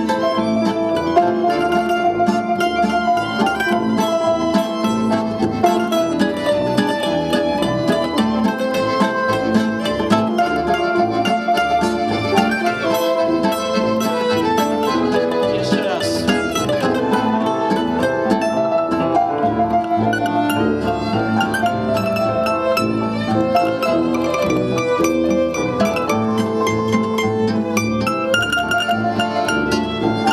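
Instrumental break from a small acoustic band: piano, violin, accordion, tuba and guitar playing a rhythmic tune together, with no singing.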